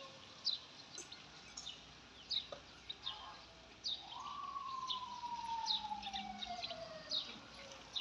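Small birds chirping repeatedly throughout. About halfway through, a single whine rises, then glides slowly and evenly down in pitch over about three seconds.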